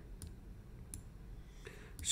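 Computer mouse clicking, a few sharp clicks spaced out under a second apart, over faint room noise.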